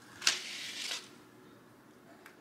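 Stencil vinyl being peeled from its backing sheet: one short rustle of plastic film and paper, lasting under a second.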